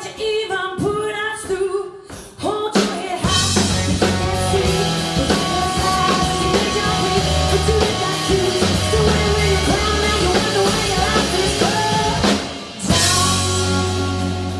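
Blues-rock band playing: a female lead vocal with electric guitar, bass guitar and drum kit. A sparse sung line opens, the full band comes in about three seconds in, and near the end a cymbal crash starts a held chord.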